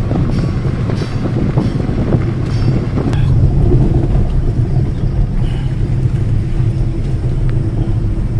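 Maruti Suzuki Wagon R driving, its engine and tyre noise heard from inside the cabin as a loud, steady low rumble.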